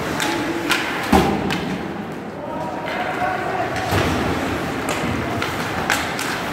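Ice hockey play in an arena: several sharp knocks of the puck and sticks against the boards, the loudest about a second in, with voices calling out across the rink.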